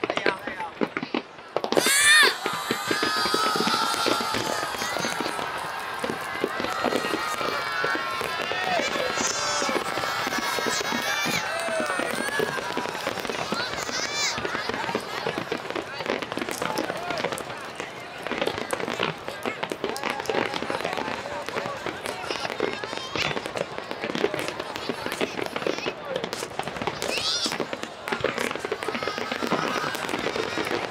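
Fireworks display: aerial shells bursting and crackling without pause, with a loud burst about two seconds in. People's voices call out over the explosions.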